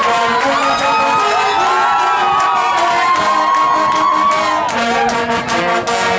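Brass band holding notes while a crowd cheers and shouts over the music.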